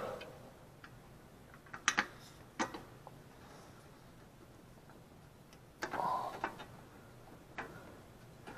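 A few faint, scattered metallic clicks and taps as a small six-millimetre bolt is handled and started by hand into an engine's valve cover, with a brief rustle about six seconds in and one more click near the end.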